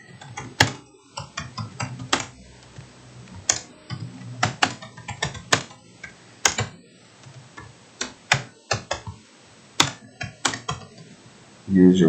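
Typing on a computer keyboard: sharp, uneven keystrokes, roughly two a second with short pauses between runs, as a sentence is typed out. A man's voice starts up near the end.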